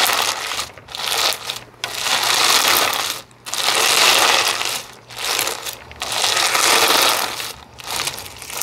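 Crunchy lava rock slime with a clear base squeezed and kneaded by hand, the lava rock pieces crackling and crunching inside it. The crunching comes in about six squeezes, each about a second long, with short pauses between.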